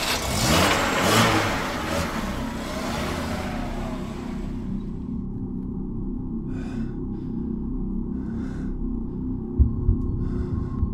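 Car pulling away and fading out over the first four seconds or so, its pitch rising and falling as it goes. A low steady drone follows, with a few short scuffing sounds and two low thumps near the end.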